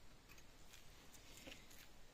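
Near silence with a few faint scattered clicks and rustles from gloved hands handling the machine.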